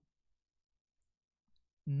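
Near silence in a pause in a man's sermon, broken by one faint short click about a second in; his voice starts again just before the end.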